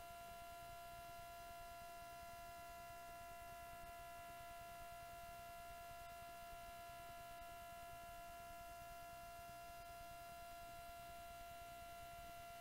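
Near silence with a faint, steady electrical hum: a set of constant high-pitched tones that never change, with nothing else happening.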